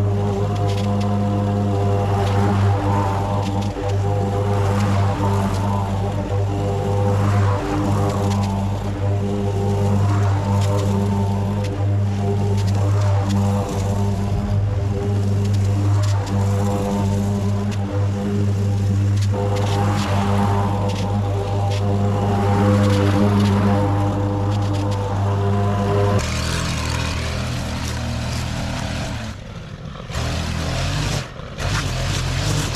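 String trimmer engine running at a steady high speed, with a swish of line cutting grass that swells and fades every two to three seconds. Near the end the steady note breaks off and a rougher, lower running sound takes over.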